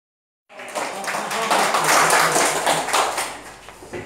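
A small group clapping with voices mixed in. It starts about half a second in and fades out near the end.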